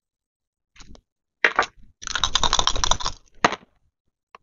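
Two dice rattling and clattering as they are rolled onto a game sheet in a binder: a few light clicks, then about a second of rapid clattering starting about two seconds in, with one last click after it.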